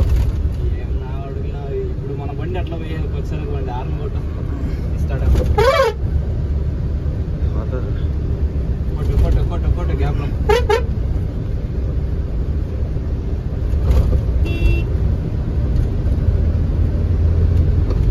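Heavy truck's diesel engine droning steadily, heard from inside the cab while driving. A horn toots about six seconds in, then gives a quick double toot a few seconds later.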